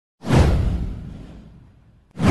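Whoosh sound effect of an animated video intro: one sweep that swells quickly a moment in and fades away over about a second and a half, with a deep rumbling low end.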